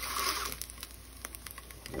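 Egg sizzling in a hot nonstick frying pan as a spatula folds it over, with a few light clicks of the spatula against the pan midway.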